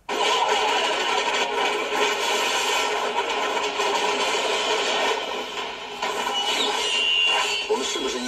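Film trailer soundtrack played through a laptop speaker and picked up by the room microphone: a dense, steady wash of sound that cuts in suddenly.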